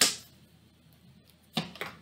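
Two short snaps of tarot cards being drawn from the deck and laid down, about a second and a half apart, with quiet room tone between.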